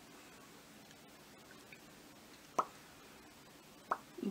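Two short, wet lip smacks about a second apart in the second half, as freshly applied lipstick is pressed between the lips, over faint room hiss.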